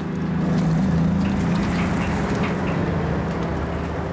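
Articulated dump truck's diesel engine running as the truck drives along a gravel haul road, with tyre noise on the gravel. It gets louder into the first second and then holds steady.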